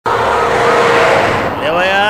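A car driving fast: a loud rushing noise that starts suddenly, with a wavering high squeal through it. It fades about a second and a half in as a man's voice begins.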